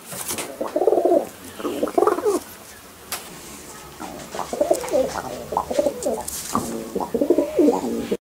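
Domestic pigeon giving repeated quacking, frog-like calls in short bouts: a couple near the start, a pause, then a denser run of calls through the second half.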